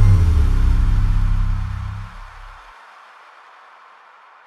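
Closing deep bass note of a trap remix ringing on after the drums stop, then cutting off about two and a half seconds in. A faint fading hiss of reverb follows.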